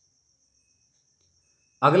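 A lull with only a faint, steady high-pitched trill running throughout, then a man's voice starts near the end.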